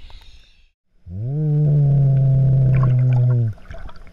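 A loud, low, steady hum lasting about two and a half seconds, gliding up in pitch as it starts and dropping away at the end, heard muffled underwater.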